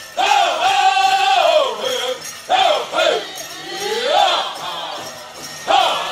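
Powwow drum group singing in high voices: a long held note that falls away, then shorter rising and falling vocal glides.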